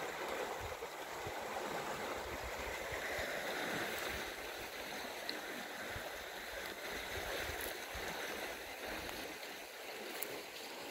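Steady rushing of water flowing in a concrete canal at a dam outlet, with irregular wind rumble on the microphone.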